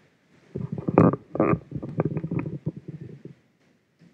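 Muffled rumbling and knocks from a clip-on microphone rubbing against clothing as it is handled. The noise comes in an irregular string of bursts from about half a second in and stops near the end.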